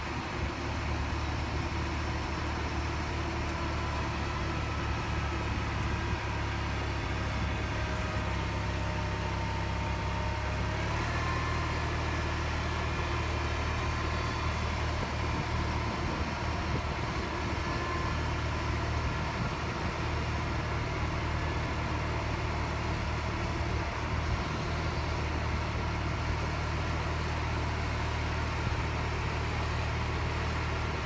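John Deere 400 garden tractor's engine running steadily while the front loader and grapple are worked, its note shifting slightly about eleven seconds in.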